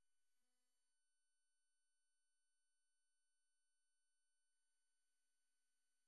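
Near silence: a digital gap with no audible sound.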